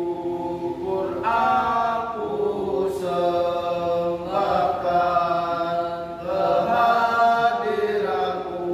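Group of male voices singing an Islamic devotional song (sholawat) together, in long held notes that move to a new pitch every second or two.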